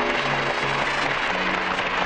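Audience applauding, a dense steady clapping, over background music that holds a few long low notes.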